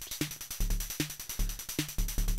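Modular synth drum pattern playing: a Make Noise 0-Coast kick, its triangle oscillator opened by the gate alone, giving a low thump that is only a bit kicky, with a Mutable Instruments Braids snare and a Moog Mother-32 hi-hat of pitch-modulated noise between the kicks. It goes as a steady repeating beat.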